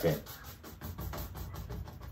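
Paintbrush scrubbing and dabbing black acrylic gesso onto a stretched canvas: a soft, quick, irregular run of scratchy taps.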